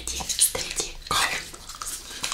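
Plastic Hubba Bubba Bubble Tape cases being handled and opened and the gum tape pulled out: a few sharp clicks and rustles, with a louder rustle about a second in.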